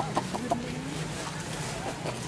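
A few short, quick animal calls in the first half-second.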